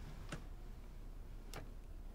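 Two faint, sharp clicks a little over a second apart, over low room hiss.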